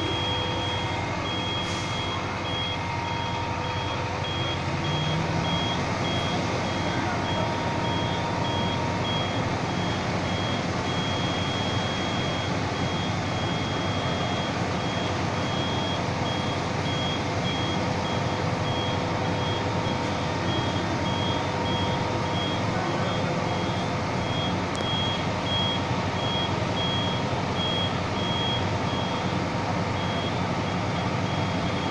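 Fire engine's diesel engine running steadily, with a high-pitched warning beeper sounding over and over while its aerial ladder is raised.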